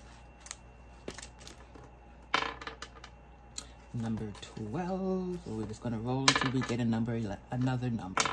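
Paper dollar bills and plastic binder pockets being handled: light clicks and rustling, with a sharper rustle about two seconds in. From about four seconds a woman's voice hums or murmurs without clear words over the handling.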